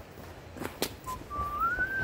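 A person whistling a tune: a short note about halfway in, then a longer held note that slides upward to the end, with a couple of sharp clicks before it.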